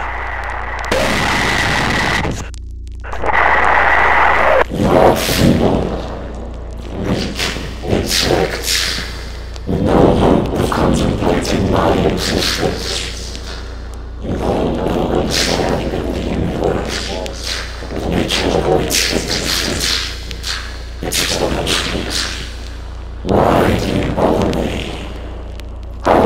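A heavily distorted, inhuman creature voice. For the first few seconds it screams harshly, with a steady high tone in the noise; it then speaks in uneven bursts with short pauses, over a steady low hum.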